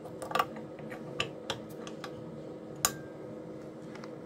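A few light clicks and knocks of a 25-watt plug-in element being fitted into the socket of a Bird through-line wattmeter, the sharpest click near the end. A faint steady hum lies underneath.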